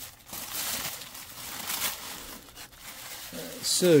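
Tissue paper crinkling and rustling in irregular handfuls as it is pulled away from a brass photo-etch sheet.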